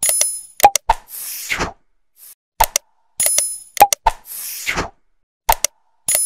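Sound effects of an animated like-and-subscribe end card: a bright bell-like ding, a couple of sharp clicks, then a whoosh, the sequence repeating about every three seconds.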